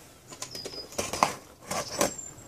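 Cardboard parcel being gripped and shifted by hand on a wooden deck: a few short rustles and light knocks, with jacket sleeves rustling.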